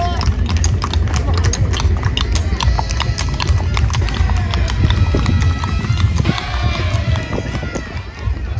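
Horses' hooves clip-clopping on an asphalt street at a walk, many overlapping, irregular hoof strikes from several horses passing close by.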